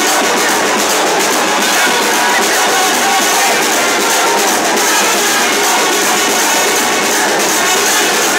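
Loud, steady festival music mixed with the noise of a dense, cheering crowd.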